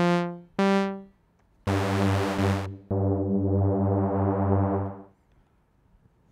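Korg Polysix software synthesizer (Rack Extension) playing two short, decaying notes, then two held chords with a wavering upper tone. It stops about a second before the end.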